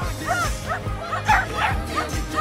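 A pop song with a steady beat playing, with a small dog barking several times over it during an agility run, most strongly past the middle.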